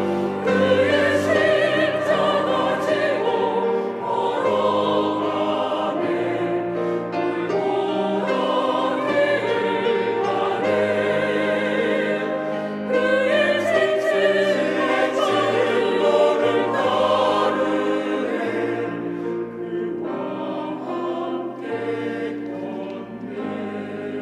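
Mixed church choir of men and women singing a Korean Easter cantata in harmony, with long held notes. The singing eases off and grows softer over the last few seconds.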